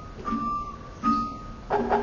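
Javanese court gamelan playing: metallophones struck in a slow, even pulse, about three notes in two seconds, each note ringing on.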